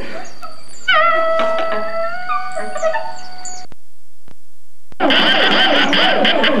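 Free-improvised band music: after a few short squiggly notes, a saxophone holds one long high note that bends slightly upward partway through. The sound then drops out for about a second with a couple of clicks, as at a tape break, and the full band comes back in dense and busy near the end.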